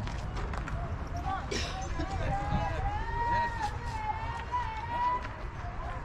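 A high-pitched voice holding one long, slightly wavering call for about three and a half seconds, over a low steady rumble.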